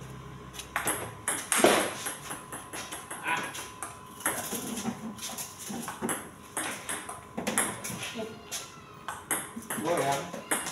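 Table tennis rally: the celluloid-type plastic ball clicks sharply off the paddles and the table top in quick alternation, starting about a second in.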